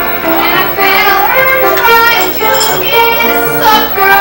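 Live solo singing with musical accompaniment: a high voice holding and gliding between sustained notes.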